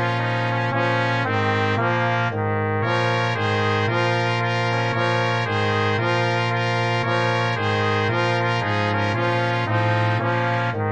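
Brass quartet of two B♭ trumpets, trombone and tuba playing a moderato swing passage in D flat major, the four parts moving together in chords that change about every half second.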